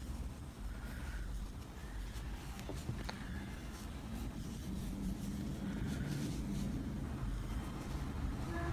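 Quiet handling sounds of yarn being wound around by hand to form a bow, over a steady low rumble, with a couple of small clicks about three seconds in.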